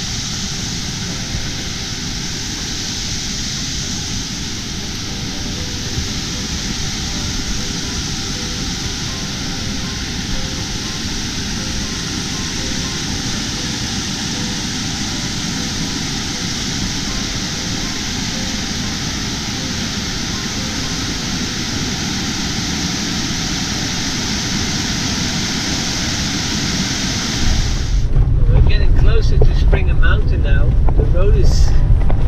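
Steady rush of water from a mountain stream cascading over bedrock and through rapids. About two seconds before the end it gives way abruptly to the louder low rumble of a Ford Transit van driving slowly on a dirt road.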